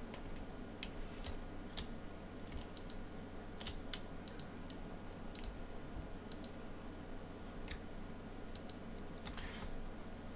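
Computer mouse clicking as page items are selected: scattered single clicks and quick pairs of clicks over a low, steady hum.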